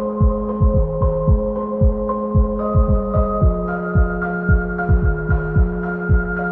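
Electronic pop song intro with no vocals: sustained synthesizer chords that shift every second or so over a deep kick drum that drops in pitch on each hit, pulsing about two to three times a second.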